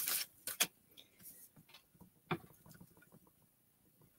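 A large sheet of lined notebook paper being flipped over and smoothed flat on a table: a few brief rustles and taps, about half a second in and again past two seconds, with very quiet gaps between.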